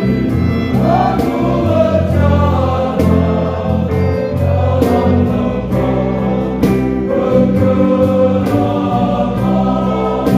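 All-male choir singing a hymn in several parts, with long held chords and gliding melody notes.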